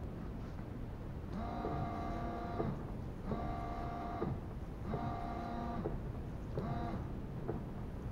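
Car windscreen wipers sweeping over glass wet from the washer spray, with a steady whine during each pass: four passes about a second long, each with a short break between. The blades carry freshly fitted rubber refills.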